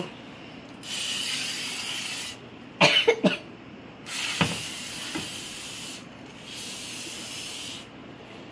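Aerosol cooking-oil spray can hissing in three bursts of one to two seconds each as it coats a baking dish.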